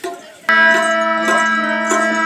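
A harmonium chord starts suddenly about half a second in and is held steadily, with a drum stroke of a qawwali accompaniment falling about every 0.6 seconds.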